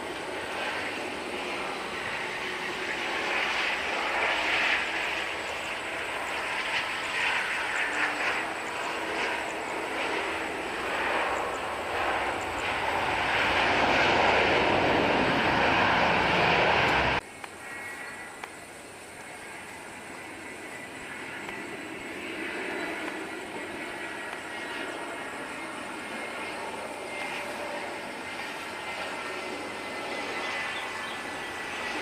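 Lion Air Boeing 737 jet engines on landing approach, growing louder to touchdown on a wet runway, with the loudest stretch just after touchdown as spray is thrown up. About 17 seconds in the sound cuts off abruptly. Quieter jet engine noise from a Batik Air Airbus A320 on its take-off follows.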